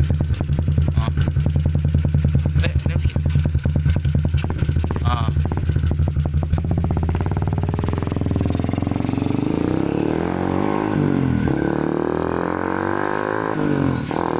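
Yamaha LC135 single-cylinder four-stroke motorcycle engine running through an Espada E6 aftermarket exhaust, first idling with a steady pulsing note. About seven seconds in the revs climb, drop back and climb again.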